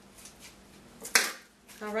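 Faint handling of a homemade paper-towel-and-tape drum mallet and its yarn tie, with a few light ticks, then one short sharp noise about a second in.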